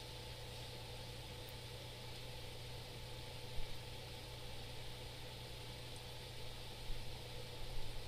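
Faint steady room tone: a low electrical or ventilation hum under even hiss, with one soft brief tap about three and a half seconds in.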